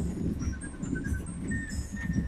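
Low, uneven rumble of a car and its tyres moving through floodwater, heard from inside the cabin. A few faint, short high chirps come through near the middle.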